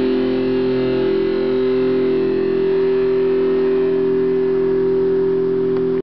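Electric guitar holding one sustained chord that rings on steadily, without new notes being struck.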